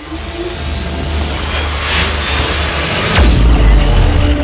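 Outro sound design for an animated logo: a swell of noise builds steadily in loudness, then a deep boom with a quick falling sweep hits about three seconds in, leading into music.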